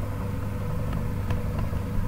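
A steady low background hum with a few faint clicks.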